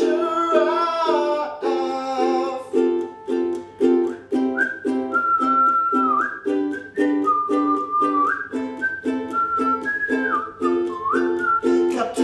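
Ukulele strummed in a steady even rhythm, with a sung note trailing off in the first couple of seconds. From about four seconds in, a whistled melody plays over the strumming, stepping and sliding between a few notes.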